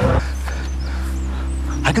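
A low, steady drone of held tones, with a few faint high chirps over it. Near the end a man's voice breaks in, wavering and pleading.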